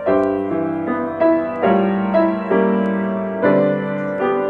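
Grand piano playing a hymn in full chords, a new chord struck about every half second to second.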